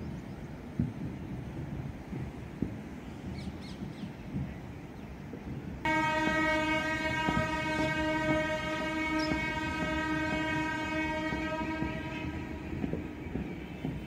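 A single long horn blast on one steady pitch, starting about six seconds in and held for about seven seconds, over faint outdoor background noise.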